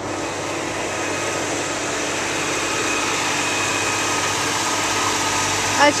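The engine of an expedition buggy running slowly as the vehicle crawls forward over timber planks. It makes a steady hum that grows slightly louder as the buggy comes closer.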